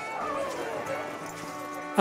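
Traditional Appenzell folk music played for dancing: several held notes sound together, one sliding downward in the first second.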